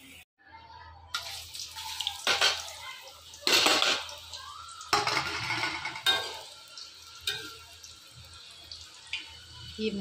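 Raw banana slices deep-frying in a kadhai of hot oil, the oil bubbling and foaming with a sizzle that swells in bursts, loudest about three and a half seconds in. A perforated metal ladle scrapes and clatters against the pan now and then.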